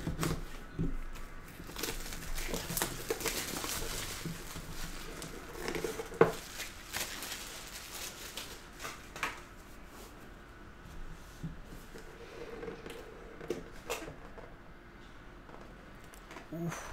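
Plastic shrink wrap being cut and peeled off a cardboard card box, crinkling, with scattered clicks and taps as the box is handled. Busiest in the first half, quieter after.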